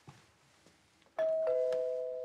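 Two-tone ding-dong doorbell chime: a higher note about a second in, then a lower note just after, both ringing on and slowly fading.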